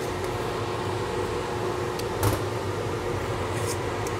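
Steady hum of a mechanical fan, with a faint steady tone running through it. Two light knocks come a little after two seconds in.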